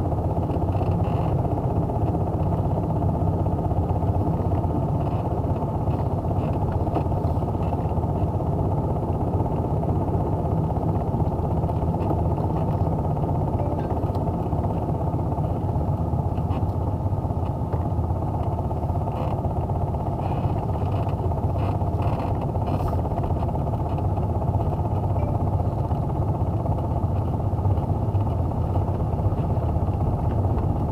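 Car driving at a steady speed, heard from inside the cabin: a low, even mix of engine and tyre noise, with a few light clicks a little past the middle.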